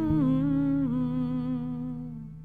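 Closing bars of a slow ballad: a wordless hummed vocal line with vibrato drifting slowly down to a held note that fades away, over a sustained low accompaniment note, with one soft plucked note just after the start.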